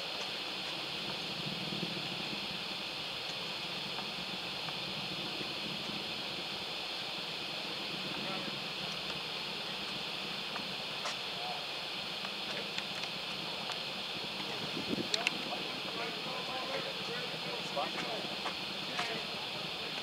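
Steady hiss with faint, scattered voices and a few small clicks, mostly in the second half.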